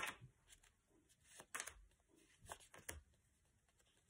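Near silence with a few faint papery rustles and taps from a stack of paper flashcards being turned and slid in the hands: one at the start, one about a second and a half in, and a couple near three seconds.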